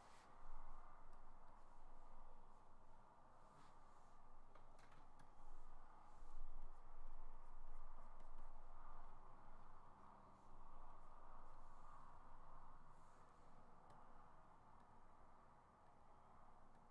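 Quiet room noise with a few faint clicks scattered through it.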